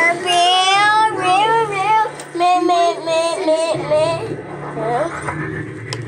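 High-pitched, child-like voices singing in a wavering sing-song, broken by short pauses.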